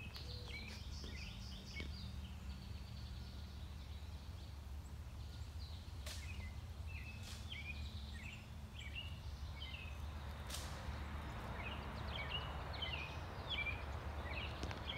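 Songbirds chirping in short, quick notes that come in bursts several times, over a steady low outdoor rumble. Two brief clicks stand out partway through.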